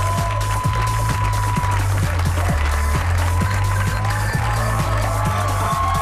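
Talk-show band's play-off music with a steady drum beat, about two to three hits a second, over a held bass line.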